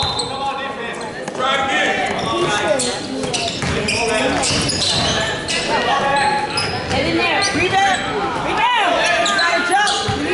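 A basketball being dribbled on a hardwood gym floor during play, with the voices of players and spectators in a large gym.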